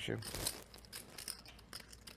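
Faint, scattered clicking of poker chips handled at the table, a player fingering his stack.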